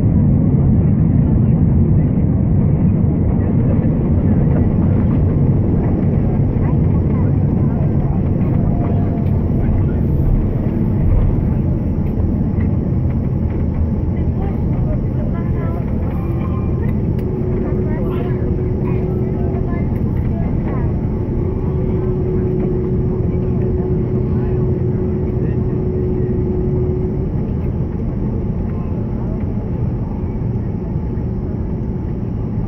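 Airliner cabin noise during the landing rollout: a loud, steady low rumble of the engines and the wheels on the runway that eases gradually as the plane slows and turns off the runway. A thin steady tone joins in the second half for about ten seconds.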